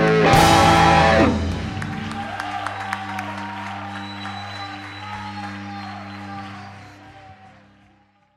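Live rock band with electric guitars and drums hitting a final loud chord about a second in, then the guitar chord and amplifiers ringing on and fading away to silence near the end.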